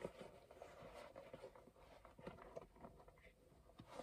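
Near silence in a closed car cabin, with faint small scuffs and rustles of a stiff Portland Leather mini crossbody bag being worked inside out by hand.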